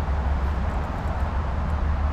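Steady low rumble with an even hiss above it: outdoor background noise with no distinct event.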